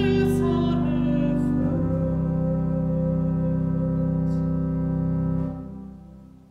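A soprano's closing sung note with vibrato, over a church organ chord; the voice stops about a second and a half in while the organ holds the final chord steadily. The organ chord is released near the end and dies away in the room's reverberation.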